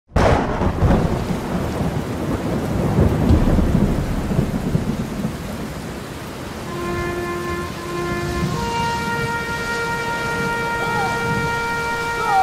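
Thunderstorm sound effect: a sudden clap of thunder at the start, then thunder rumbling over steady rain. About seven seconds in, steady held musical notes come in over the rain.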